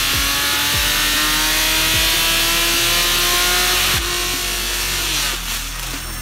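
Ferrari 550 Maranello V12 in a mid-engined 412P replica doing a full-throttle pull on a chassis dyno, its pitch climbing steadily under load. About four seconds in the throttle comes off, and the revs fall away shortly after.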